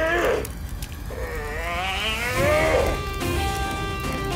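Dramatic background score: a long, wavering vocal wail rising in pitch, heard twice, then held musical chords come in near the end.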